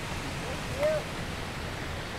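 Shallow water pouring steadily over a low concrete creek spillway, an even rushing wash. About a second in there is a brief faint rising-and-falling tone.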